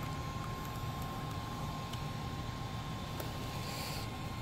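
Steady low room hum with a faint constant high tone, and a few faint light clicks from small fiber-optic connectors and the handheld tester being handled.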